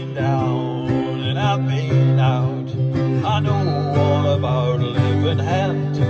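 Acoustic guitar strumming chords under a harmonica solo whose notes bend up and down in pitch.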